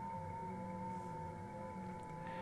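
FT8 digital-mode signals on the 17-metre amateur band, received by a ham transceiver and played through loudspeakers: several steady whistling tones at different pitches sounding together, one louder than the rest, over faint receiver hiss, with the high end cut off by the radio's sideband filter.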